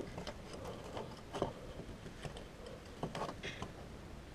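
Faint, scattered small clicks and knocks of hand tools being handled around the power-steering pump, over low background noise.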